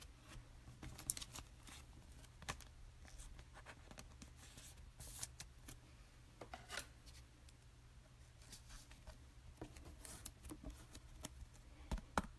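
Faint handling of trading cards: light clicks, rustles and short scrapes as cards are moved and a card is slid into a rigid plastic holder, at scattered moments over a low steady hum.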